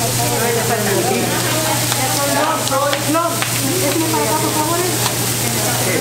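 Pupusas sizzling on a large flat-top griddle: a steady, even hiss throughout, with voices in the background and a low steady hum.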